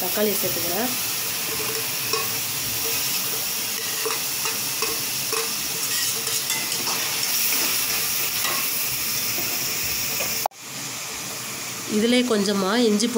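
Chopped vegetables sizzling in hot oil in a kadai, with a spoon stirring and scraping through them. The sizzle drops off suddenly near the end, leaving a softer hiss.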